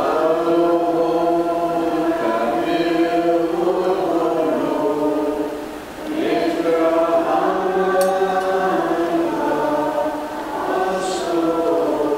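Maronite liturgical chant sung by voices together in a slow melody of long held notes, with a short break in the line about six seconds in.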